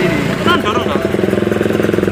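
Motorcycle engine running steadily with a fast, even pulse, coming in about half a second in, with voices over it.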